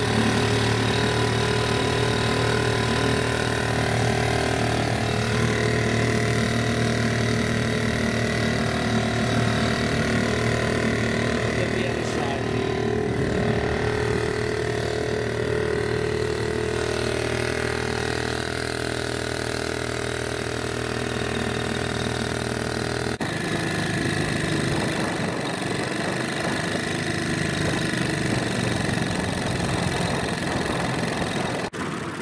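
A 1937 Evinrude Fisherman two-stroke outboard motor running steadily, driving a small boat along. Its note changes abruptly about three-quarters of the way through.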